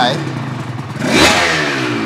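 Aprilia RS 250's two-stroke V-twin running on its twin carbon expansion-chamber silencers, with a throttle blip about a second in, the revs rising and then dying back. The freshly rebuilt engine is still cold and being run in, its idle rounding out as it warms.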